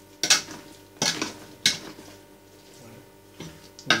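A metal spoon stirring chopped meat and vegetables in a large stainless steel stockpot, knocking and scraping against the pot's side in about half a dozen sharp clinks at irregular intervals.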